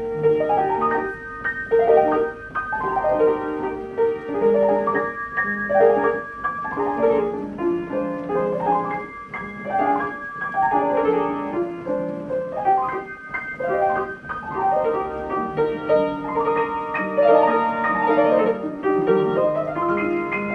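Ampico reproducing grand piano playing a classical piece from its roll: a continuous flow of fast piano notes and chords.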